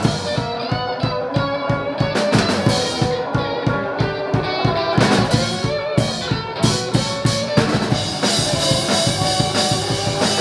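Live rock band playing: electric guitars over a drum kit with a steady beat of kick and snare. About eight seconds in the cymbals open up and the sound gets brighter.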